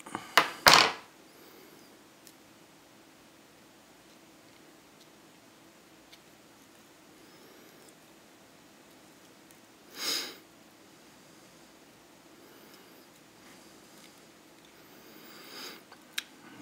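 Quiet room tone with small handling sounds from tying material onto a hook at a fly-tying vise. A quick cluster of sharp clicks and rustles comes right at the start, and one short breathy sound comes about ten seconds in.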